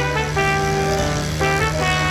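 Background music: a melody of held notes changing every half second or so over a steady low note.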